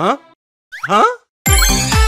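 Two short rising whoops, cartoon-style, with silence between them. About one and a half seconds in, an upbeat children's song with a bouncy beat starts.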